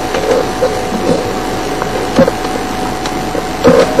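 Game-drive vehicle's engine running steadily as it creeps along at low speed.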